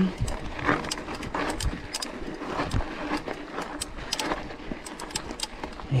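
Mountain bike rolling over loose gravel and stones on a dirt trail: tyres crunching, with the bike rattling in irregular clicks and knocks.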